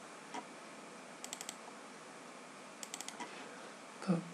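Computer keyboard keys clicking in two short quick bursts of about four keystrokes each, one a little after a second in and the other near three seconds, over faint room hiss.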